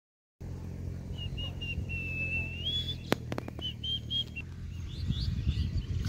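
A bird whistling: a run of short high notes, one longer wavering note that rises at its end, then more short notes, over a steady low hum. A few sharp clicks come about three seconds in.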